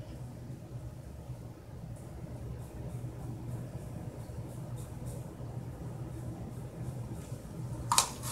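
Faint handling sounds of a plastic dye brush and tint bowl as hair colour is dabbed and brushed on, a few soft ticks and rustles over a steady low hum.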